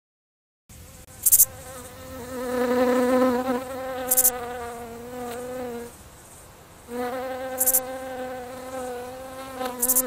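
A fly buzzing close to the microphone, its pitch wavering as it moves; the buzz breaks off about six seconds in and starts again a second later. Four short high-pitched chirps sound over it.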